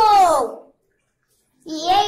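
A child's voice counting numbers aloud: one number trails off just after the start, a second of silence follows, and the next number begins near the end.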